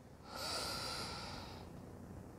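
A woman's faint audible breath, one long out-breath lasting about a second and a half that trails off.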